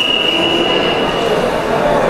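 Referee's whistle: one long, steady, high blast that stops about one and a half seconds in, halting the wrestling action, over the murmur of a sports hall.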